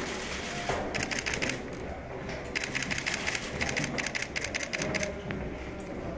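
Camera shutters firing in rapid bursts, runs of quick clicks each lasting about a second, as press photographers shoot.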